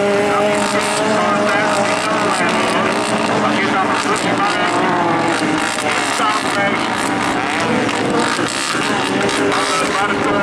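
Several autocross race cars running hard on a loose dirt track, their overlapping engine notes rising and falling as they accelerate and brake through a bend.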